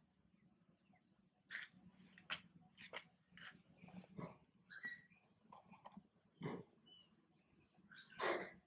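Macaques making faint, short sounds while grooming: a string of brief scratchy noises, with a couple of short high squeaks around the middle and a little later.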